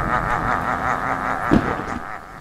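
Eerie sound-effect drone, wavering and steady, with a single low thud about one and a half seconds in.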